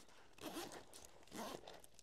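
A zip on a small fabric shoulder bag pulled in two short, faint strokes, about half a second and a second and a half in.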